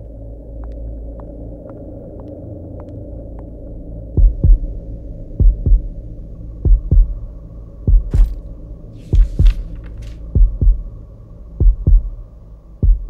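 Heartbeat sound effect in a suspense film score: a low droning hum with faint regular ticks, then from about four seconds in a heavy double thump, lub-dub, repeating roughly every 1.2 seconds.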